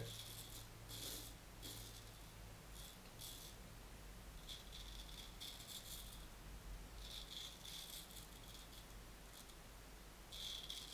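Straight razor blade scraping through lathered beard stubble in a series of short strokes, a faint scratchy rasp with each pass.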